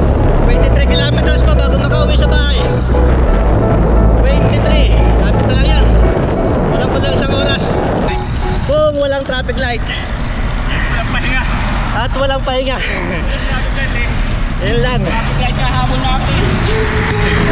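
A man talking while riding a road bike, over steady wind noise and a rap track with heavy bass in the background.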